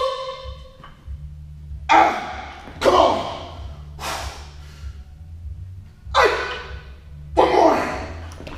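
Loaded barbell with bumper plates clanking once with a ringing metal tone, then a series of short sharp noisy bursts about every second or so through repeated muscle snatch reps, over a low steady hum.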